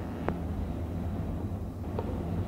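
Steady low electrical hum with faint hiss, the background noise of an old cassette tape recording, with one faint click about a third of a second in.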